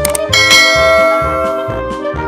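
A bright bell-like chime rings out about a third of a second in and holds for over a second, over background music with a steady beat.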